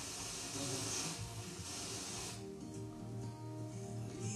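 FM broadcast radio audio demodulated by a software-defined radio while it is being retuned. Noisy static hiss fills the first couple of seconds, then about two and a half seconds in the hiss clears and a station's music comes through cleanly.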